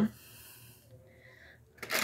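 A woman's audible intake of breath, a soft hiss just under a second long right after she stops talking, followed by a fainter breath out. A short, louder sound comes near the end.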